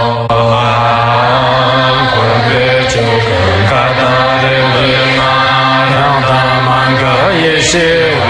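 A Tibetan Buddhist prayer chanted in Tibetan to a slow melody, the voice rising and falling over a steady low drone.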